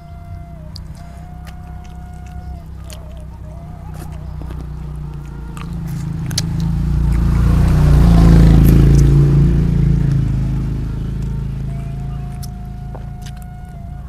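A motor vehicle passing by: its engine noise swells over several seconds to a peak a little past the middle, then fades away. Small clicks of chewing and of fingers handling food run throughout.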